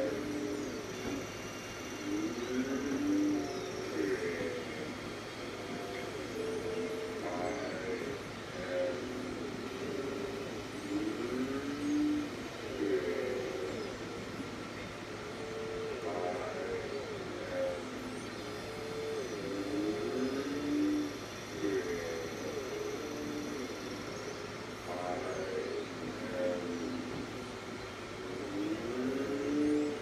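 A short phrase of sliding, gliding tones that repeats almost identically about every eight and a half seconds, like a loop of playback audio.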